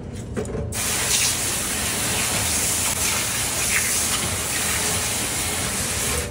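Tap water running steadily from a sink faucet onto a cutting board and fish, starting just under a second in and stopping near the end, rinsing away loose fish scales.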